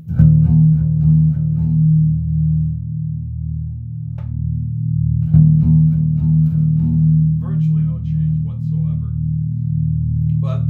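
1978 Gibson Grabber electric bass played with the fingers: a low riff of repeated notes, struck hard at the start and again about five seconds in.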